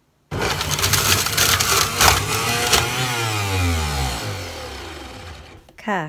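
Electric centrifugal juicer running at full speed, loud and rough as its motor works hard on celery and other produce. About three seconds in it is switched off, and the motor and spinning basket wind down with a falling pitch.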